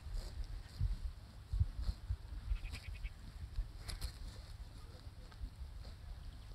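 A faint, brief animal call about two and a half seconds in, over a steady low rumble.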